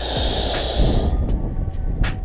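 Strong wind buffeting the camera microphone: a steady low rumble under a noisy haze, with a brighter hiss in the first second.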